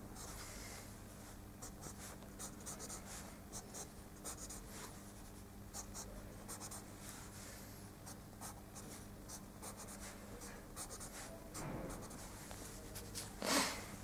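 Faint, quick, irregular strokes of a pencil sketching on paper, scratching out short lines one after another as the details of a drawing are firmed up.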